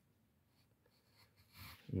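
Near silence: quiet room tone, with a faint breath shortly before a man's voice comes in at the very end.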